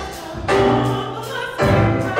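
Church choir singing gospel music in held chords. The sound dips briefly, then a new chord enters about half a second in and another near the end.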